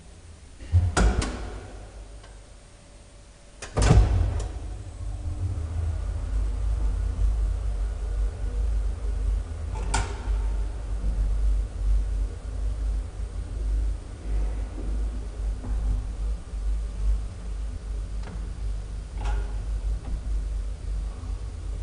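Graham Brothers elevator, modernised by Magnusson: doors shut with two knocks, about one and four seconds in, then the car travels with a steady low rumble. A single sharp click comes about ten seconds in, with fainter clicks near the end.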